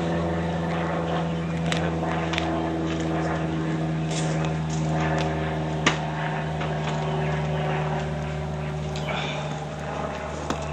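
A steady, even-pitched mechanical hum like a running engine, with scattered faint clicks and one sharp pop about six seconds in.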